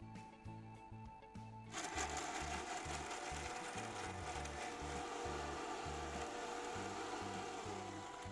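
Electric mixer-grinder with a steel jar grinding chutney. It switches on about two seconds in, runs steadily, and winds down with a falling pitch near the end.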